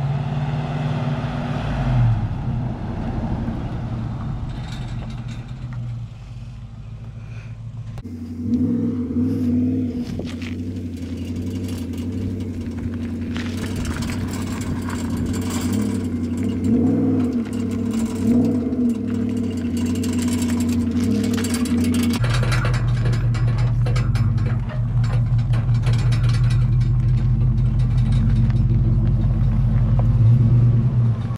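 Pickup truck engine running as it tows a utility trailer. The engine note falls about two seconds in, and from about two-thirds of the way through it settles into a steady idle.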